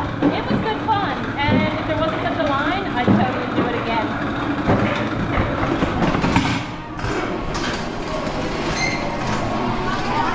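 Alpine coaster sled running on its tubular steel rail, wheels rattling and rumbling as it rolls into the station, with voices over it in the first few seconds.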